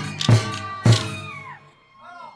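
Bihu folk music: dhol drum strokes with a high melody line over them, three strokes about half a second apart, the music stopping about a second and a half in.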